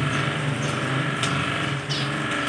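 A steady, low mechanical hum like a small motor running, with two faint clicks in the second half.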